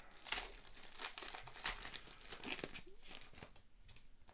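Foil wrapper of a 2022-23 O-Pee-Chee Platinum hockey card pack crinkling and tearing in the hands as the pack is opened: a run of irregular crackles that thins out near the end.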